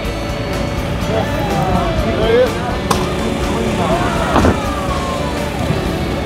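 Outdoor crowd chatter and faint background music over a steady low rumble, with a single click about halfway through.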